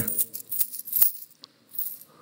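Coins jingling and clinking inside a cloth sock as it is shaken, in a few short bursts.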